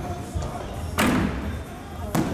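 A gymnast's feet striking a vault springboard at take-off: one sharp bang about halfway through, with a short ringing tail.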